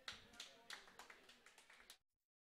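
Near silence with a few faint, scattered taps and clicks.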